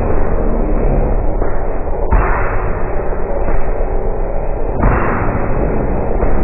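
A pop song recording slowed to about 1% speed, heard as a dense, continuous drone of sustained low tones. A hiss swells in sharply about two seconds in and again near five seconds.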